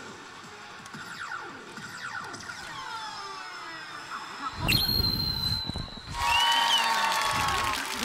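Pachislot machine (SANKYO Kakumeiki Valvrave) sound effects and music. Sliding, sweeping effects build up, then a sudden loud hit with a high ringing tone comes about halfway through. A loud fanfare follows, the machine's effect for a hit won at the last moment.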